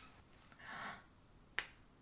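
A soft rustle, then a single sharp snap about one and a half seconds in: a petal being plucked off a tulip.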